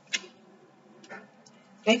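A few short, light clicks of tarot cards being handled in the hands, about one a second, in a pause in the talking.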